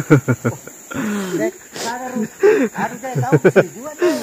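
Men's voices calling and talking in short bursts, over a steady high-pitched insect drone.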